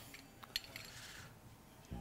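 Faint clicks and light scraping of a cutting utensil starting on the baked pizza crust, with the sharpest click about half a second in.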